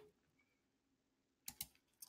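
Near silence: room tone, broken about a second and a half in by two quick clicks of a computer mouse.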